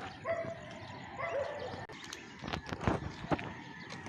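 A dog barking faintly a few times, with some light knocks in the second half.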